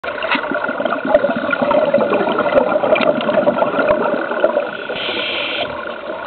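Underwater noise heard through a camera housing: a steady muffled rush with scattered crackles and clicks from scuba divers' regulator bubbles, and a short hiss about five seconds in.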